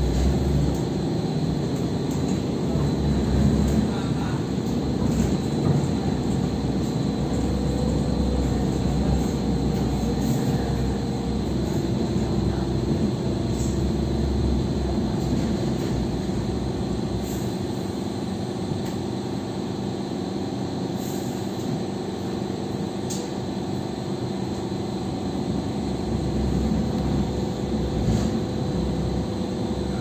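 Hong Kong Light Rail Phase I car running between stops, heard from inside the passenger cabin: a steady rumble of wheels on track with a humming tone that drops lower about a third of the way in, and a few faint clicks.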